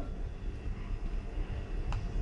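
Quiet room tone: a faint steady low hum with a light tick just before the end.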